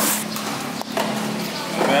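Busy fish-market background with a steady low hum and people talking, broken by a couple of sharp knocks about a second in. A voice starts near the end.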